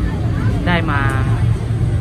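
A man speaking Thai to the camera, briefly, over a steady low background rumble.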